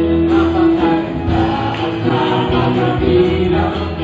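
A congregation and worship team singing a gospel praise song together over live band accompaniment, with sustained chords and a steady bass.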